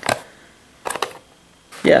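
A few light plastic clicks from a clear plastic food container and its lid being handled: one at the start and two or three about a second in.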